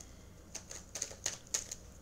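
A run of light, irregular clicks and taps, several a second, over a faint steady low hum.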